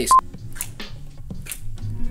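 A single short electronic beep, a steady high tone lasting about a tenth of a second, then faint clicks and rustling of clothes being pushed along on hangers, over quiet background music.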